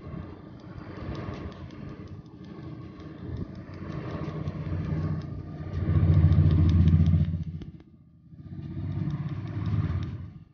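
A low engine rumble that swells to its loudest about six to seven seconds in, drops away near eight seconds and comes back, over rapid sharp clicks from a tattoo-removal laser handpiece firing pulses at the skin.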